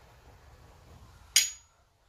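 A double-sided neodymium fishing magnet snapping onto the rusty steel head of a hammer: one sharp clack a little past halfway, with a short high metallic ring after it.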